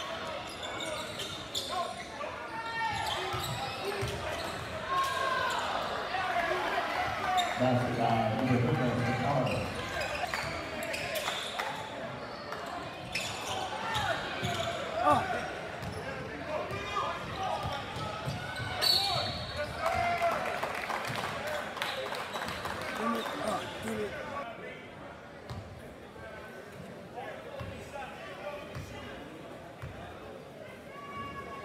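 Basketball game in a large gym: the ball bouncing on the hardwood court amid shouts and chatter from players and spectators, echoing in the hall.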